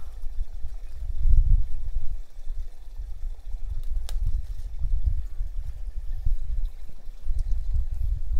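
Low, uneven rumble of wind buffeting the microphone, with a single sharp snap about four seconds in as a bok choy leaf stalk is broken off the plant.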